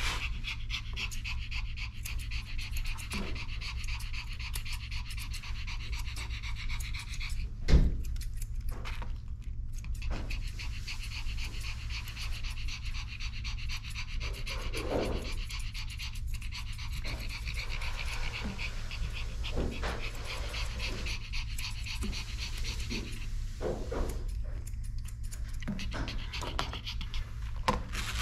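Pomeranian panting rapidly and steadily over a steady low hum, with one sharp thump about eight seconds in.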